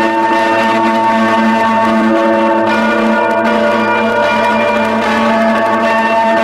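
Clean-toned electric guitar playing a lo-fi improvisation, chords and notes ringing on in a steady, continuous stream.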